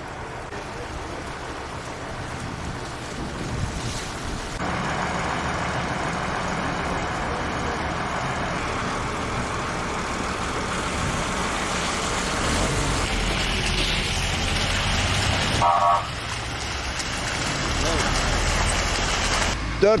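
Outdoor roadside sound of highway traffic, vehicles going by with a low rumble that grows in the second half, with wind on the microphone and voices in the background.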